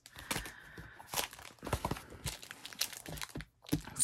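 Journals and a notepad in a clear plastic bag being handled and shifted on a desk: irregular crinkling of the plastic and soft knocks as they are set down.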